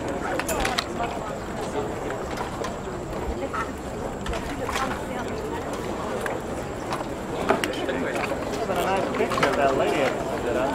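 Crowd chatter: many voices talking at once around a handshake line, with scattered short clicks.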